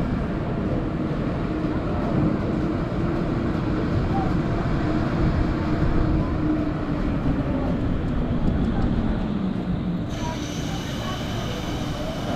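Wind rushing over the microphone at the top of a 335 ft Intamin drop tower, with a steady low hum under it that sinks slightly in pitch. About two seconds before the end the sound suddenly brightens with a faint high whine as the seats tilt forward to face the ground before the drop.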